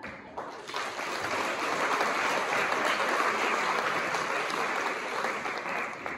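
Audience applauding in a hall, swelling over the first second and then holding steady.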